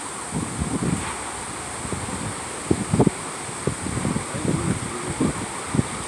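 Gusty wind buffeting the microphone: irregular low rumbling blasts over a steady rush of wind, the strongest about three seconds in.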